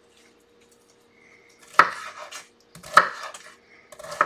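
Chef's knife cutting through partly frozen chicken breast and striking a wooden cutting board: two sharp knocks about a second apart, the first a little under two seconds in, each followed by a light scrape.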